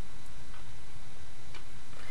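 Steady background hiss with a couple of faint, light taps.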